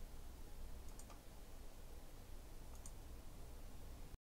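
Faint low room hum with two soft pairs of small clicks, one about a second in and one near three seconds.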